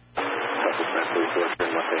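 Air traffic control radio transmission: a controller's voice giving a heading instruction over a thin, narrow-band radio channel. It opens on faint radio hiss just before the voice starts, with a brief break partway through.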